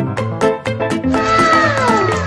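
A white kitten's long, high meow that slides steadily down in pitch, starting about a second in, heard over upbeat background music with a steady beat.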